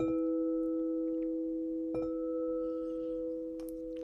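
A singing bowl rings with a steady, pure low tone and fainter higher overtones. It is struck softly with a padded mallet at the start and again about two seconds in, and the ring slowly fades.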